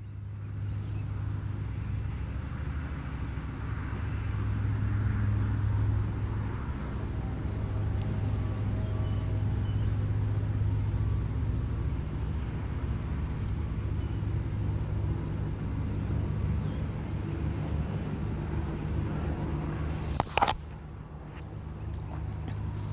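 A steady low engine hum, swelling a little in the middle, with one sharp click near the end.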